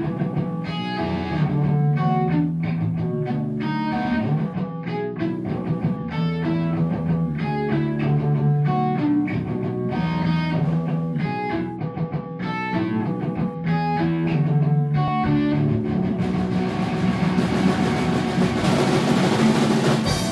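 Electric guitar and bass guitar playing an instrumental punk rock riff together, picked guitar notes over a steady bass line. In the last few seconds the sound thickens into a loud, noisy wash as the song builds to its close.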